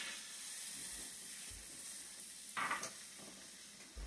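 Quiet sizzling of rice and orzo toasting with onions in oil in a hot nonstick pan as it is stirred with a spatula, with one brief louder stir about two and a half seconds in.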